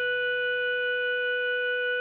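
A clarinet holding one long, steady note over a soft, low backing accompaniment.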